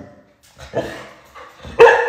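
A dog barking: a fainter bark about two-thirds of a second in, then a loud, high, drawn-out bark near the end.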